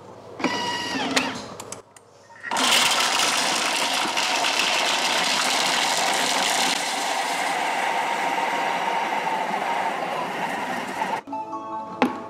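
Thermomix TM6 running at speed 6, its blades breaking up frozen-hard strawberries and banana chunks in the steel bowl, a loud, steady blending noise. It starts about two and a half seconds in, eases slightly after the middle and stops suddenly near the end.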